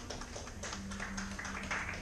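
Scattered taps, knocks and clicks of instruments and stage gear being handled, over a low steady note.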